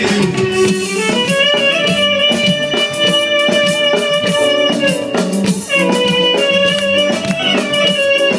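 Live Bulgarian popfolk band music: a clarinet plays a melody of long held notes over a steady beat.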